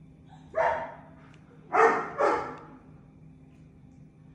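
A dog barking three times: a single bark, then a quick double bark about a second later.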